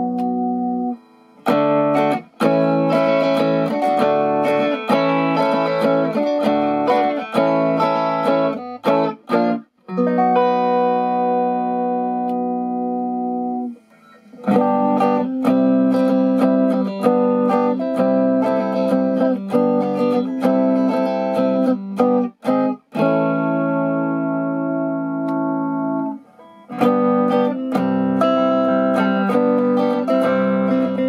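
1998 Fender American Standard Stratocaster electric guitar being played, strummed and picked chords with a few chords left to ring and several short breaks, to show how its pickups sound.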